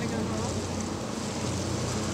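A pickup truck driving off through an intersection: steady low engine hum with tyres hissing on wet pavement, and no siren.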